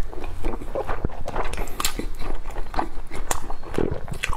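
Close-miked wet chewing and lip-smacking of soft, fatty braised pork belly, a string of irregular moist smacks and clicks from the mouth.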